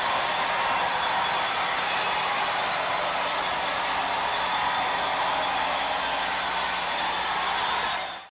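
Home crowd in an ice hockey arena cheering steadily after the home team's tying goal.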